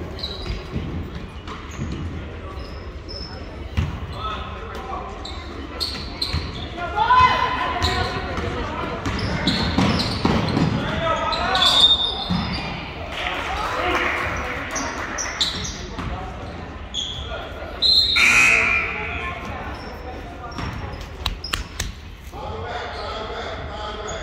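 Basketball game in a gymnasium: ball bouncing on the hardwood floor with sharp knocks, amid scattered spectators' voices and shouts echoing in the large hall. The shouting swells around the middle, and there is one loud short burst about three quarters of the way through.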